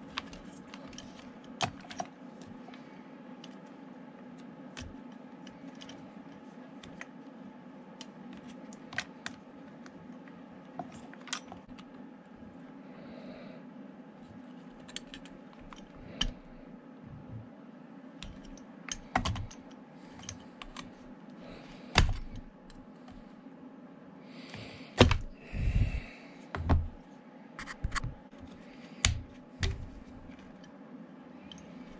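Scattered light clicks and clinks of hand tools and small metal and plastic parts as the carburetor and throttle linkage are worked off a Poulan 2150 chainsaw, with a run of louder knocks over the last several seconds.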